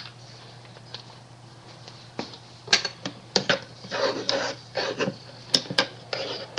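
A metal spoon stirring food colouring into water in a small plastic measuring cup, clicking and scraping against the cup in a quick run of strokes that starts about two seconds in.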